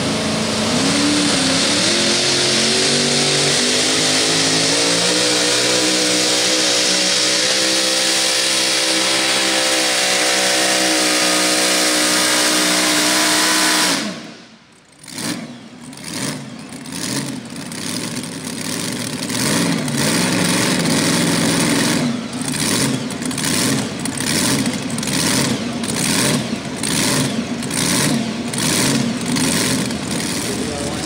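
Supercharged V8 of a Mini Rod pulling tractor running flat out under load, its pitch climbing slowly for about fourteen seconds, then cut off suddenly. After that it runs unevenly, with quick blips of the throttle in a choppy rhythm.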